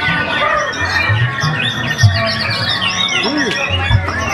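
Caged songbirds singing a dense stream of rapid chirps and whistles, with a white-rumped shama (murai batu) in full song among them. Background music with a steady bass beat runs underneath.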